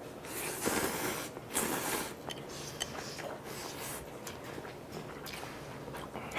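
Instant ramyun noodles being slurped and eaten: two hissing slurps in the first two seconds, then chewing and small wet mouth clicks.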